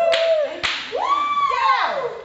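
A high voice holds a note and then lets out a rising and falling whoop, with two sharp smacks about half a second apart early on.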